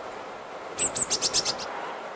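Eurasian magpie chattering: one quick burst of about half a dozen harsh notes, starting just under a second in and lasting under a second.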